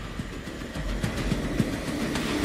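Trailer sound effect under an animated title reveal: a low rumble with a rising hiss that builds steadily in loudness, with irregular low knocks underneath.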